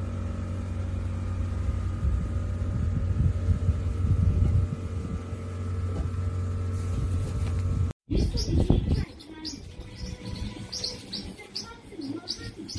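A steady low mechanical hum for the first two-thirds, broken off suddenly. Then quieter, repeated short high chirps follow, a couple a second.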